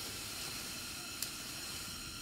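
A steady hiss, with one faint click about a second in.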